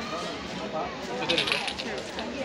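A short burst of small metallic clinks and jingling, about one and a half seconds in, over voices.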